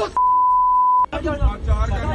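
Censor bleep: a steady, loud, single-pitch beep about a second long that blanks out abusive words in the clip's audio. Men's voices follow right after it.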